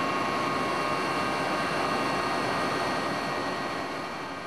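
Steady aircraft engine noise, a constant rush with a high whine over it, as heard on board the aircraft filming from the air; it eases slightly near the end.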